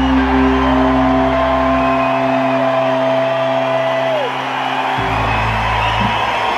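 Live band with electric guitar holding sustained notes and chords, one long lead note ringing for several seconds. The bass drops out about two seconds in and comes back near the end.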